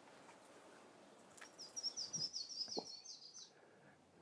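A small bird singing faintly in the background: a quick run of about nine short, high, falling notes, roughly four a second, lasting about two seconds.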